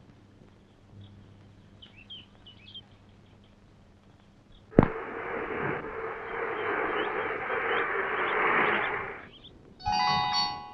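Quiet film soundtrack with a few faint high chirps, then a sudden click about five seconds in, after which a motor vehicle's engine runs steadily for about four seconds before fading out.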